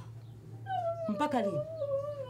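A woman's long, drawn-out vocal exclamation, starting about two-thirds of a second in and held on one slightly falling note. A second short voice sound drops steeply in pitch over it about a second in.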